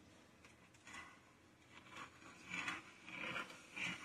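Hand brace turning a reamer in a drilled leg hole in a wooden stool seat, enlarging the hole: a few faint scraping strokes that grow a little louder toward the end.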